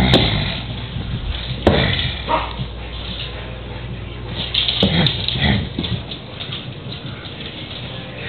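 A miniature pinscher makes a few short sounds, among sudden knocks and rustling from a handheld camera being moved about.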